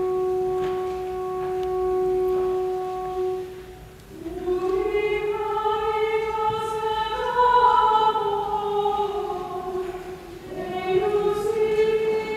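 A single sustained church organ note holding steady for the first few seconds, then dying away. From about four seconds in, voices sing in long held notes, drop off briefly around ten seconds, and start again near the end.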